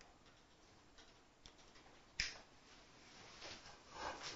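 Near silence: room tone with a few faint ticks and one sharp click a little over two seconds in.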